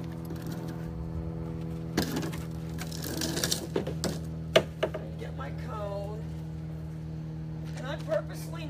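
A wagon being moved by hand: scattered knocks and a rattle, with one sharp knock about halfway through, over a steady hum.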